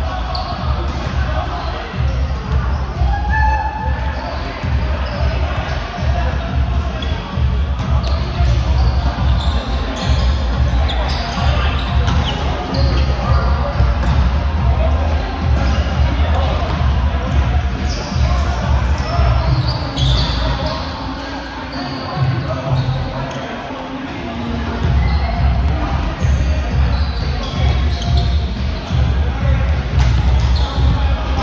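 Indoor volleyball play in a large gym hall: the ball being struck and bouncing on the hardwood court, with indistinct players' voices. A heavy low rumble runs underneath and eases off for a couple of seconds about two-thirds of the way through.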